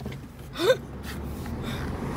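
A short, breathy vocal sound with a rising pitch, about two-thirds of a second in. It sits over the steady low rumble of a car cabin.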